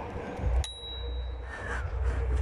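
A bicycle's handlebar bell rung once, just over half a second in, its single clear tone ringing on for nearly a second before fading, over a low rumble from riding.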